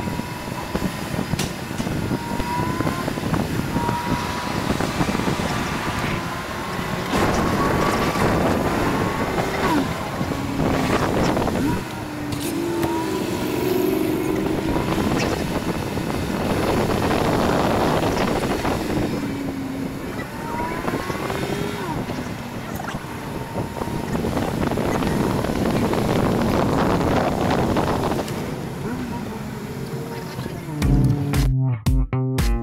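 Car engines running in a crowded parking lot as the slowly moving car passes lines of hot rods and muscle cars. The sound swells and fades every few seconds, with faint voices mixed in.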